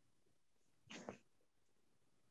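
Near silence: faint room tone over a video call, with one brief faint sound about a second in.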